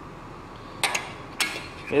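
Spark plugs clinking against a metal parts tray: two sharp metallic clinks about half a second apart, over a steady low background hum.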